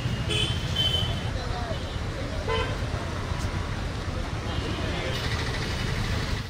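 Roadside traffic: a steady rumble of passing vehicles with short horn toots near the start and again near the end, and voices of people standing around.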